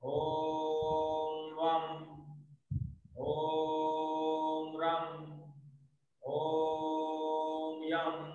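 A man chanting a mantra in long held tones: three sustained notes on one steady pitch, each about two and a half seconds long, with a short breath between them. The vowel shifts just before each note ends.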